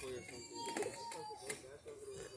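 Indistinct voices of several people talking at once in the background, with no clear words.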